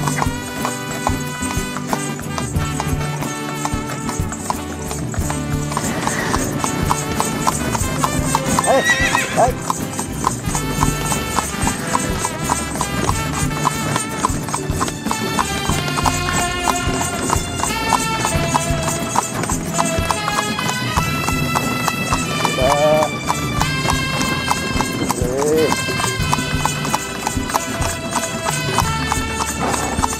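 A horse's hooves clip-clopping at a steady pace on a paved road as it pulls a tonga (two-wheeled horse cart), with background music playing over it.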